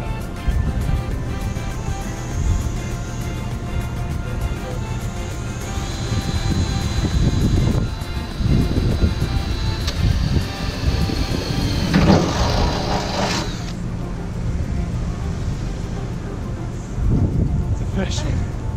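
Cordless drill boring a starter hole through the van's sheet-steel rear door, a high steady whine for several seconds midway, loudest just before it stops, over background music.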